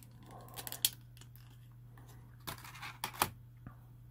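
Clear plastic blister packaging crackling and clicking as a tiny diecast metal car is pried out of it by hand: irregular sharp clicks, the loudest just under a second in and again around three seconds in.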